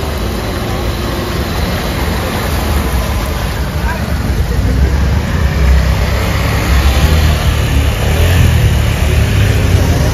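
Motorcycle and scooter engines running as the bikes ride through floodwater, with water splashing around them. The sound grows louder from about halfway through as a motorcycle passes close.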